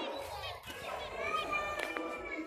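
Cage birds calling: zebra finches (sold as 'prince birds') and budgerigars, with a run of short chirps and chatter and a longer whistled note about one and a half seconds in.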